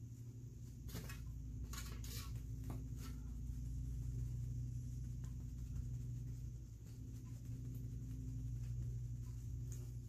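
Steady low hum with a few soft taps and rustles in the first three seconds, as a natural sponge is dabbed onto a plastic stencil and handled at the paint plates.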